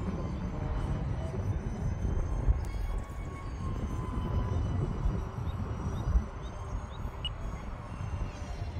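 Wind buffeting the microphone in a low, uneven rumble, with the faint, thin, steady whine of a small electric ducted-fan RC jet flying high overhead, drifting slightly in pitch as it passes.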